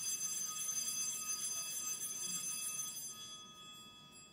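Altar bell rung at the elevation of the chalice, a bright metallic ring with many high overtones that holds and then fades out about three seconds in.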